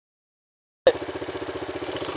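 Quad bike engine idling steadily with an even, rapid beat, starting nearly a second in.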